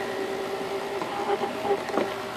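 Small electric motor of an old funhouse figure's crude animating mechanism, running with a steady hum.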